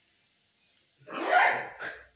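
A macaw gives a harsh, loud squawk about a second in, then a short, sharper call near the end.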